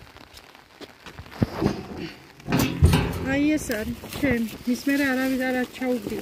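The lid of a metal wheeled refuse bin being opened, with knocks and a loud clatter about two to three seconds in, followed by a voice talking.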